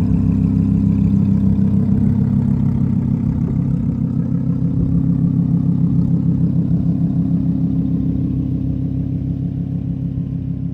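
A 2015 Lamborghini Huracán LP610-4's V10 idling steadily through a Soul Performance aftermarket exhaust, a low even burble that grows gradually fainter.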